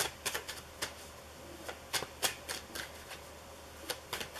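Tarot deck being shuffled overhand: a run of sharp, irregular snaps of cards dropping from one hand onto the other, with a short lull partway through.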